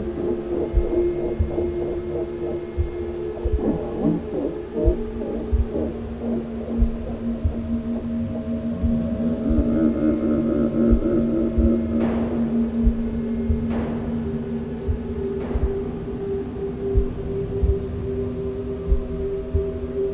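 Eerie sound-design drone of long held low tones over irregular low thumps, with a second, higher tone joining partway through and three sharp cracks a couple of seconds apart near the middle.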